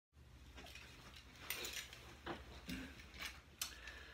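Faint, scattered clicks and rustles of a person moving about and settling in, five or six at irregular spacing, over a low steady hum.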